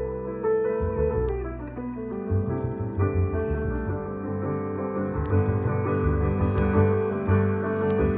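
Double bass played pizzicato, low plucked notes under held piano notes in a duet.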